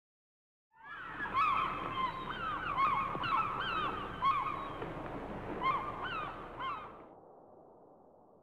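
Seagulls calling over a steady wash of noise: a string of short, bending cries that starts about a second in and cuts off abruptly about seven seconds in, leaving a faint fading tail.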